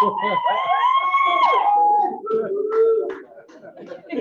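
High-pitched voices calling out in long, drawn-out cries over the first two seconds, followed by a lower voice holding a note; quieter crowd voices follow.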